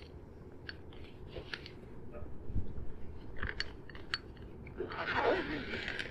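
Nylon carry bag holding a folded tennis ball cart being handled and zipped: fabric rustling and scattered small clicks from the zipper pull and the cart's frame, with a denser rasping patch near the end.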